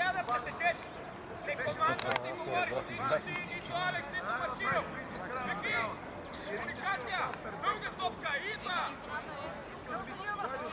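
Players and coaches calling and shouting to each other across a football pitch, several voices overlapping in short calls, with one sharp knock about two seconds in.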